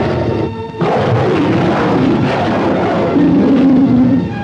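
Dramatic film background score, joined about a second in by a loud, rough tiger roar that carries on to the end.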